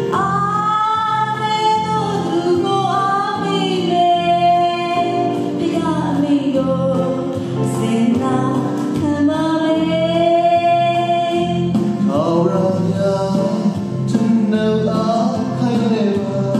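A woman singing a Christian song into a microphone over the PA, with long held notes over instrumental backing.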